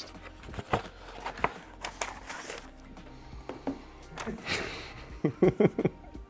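Paper and envelope handling: scattered rustles, crinkles and small clicks as a mailing envelope is opened and the letter inside taken out, over quiet background music.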